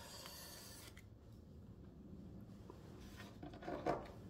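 Faint rustling and rubbing as an arm and sleeve move across a table of tarot cards close to the microphone. There is a brief hiss of friction in the first second and a short scuffle near the end.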